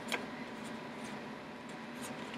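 Quiet room tone with a steady faint hum and one small click just after the start.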